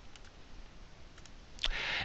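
A few faint, sparse computer mouse clicks, keying entries into an on-screen calculator, followed near the end by a short burst of breath-like noise.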